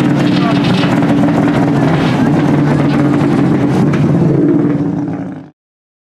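Subaru Impreza rally car's turbocharged flat-four engine idling steadily, with voices over it. The sound cuts off suddenly near the end.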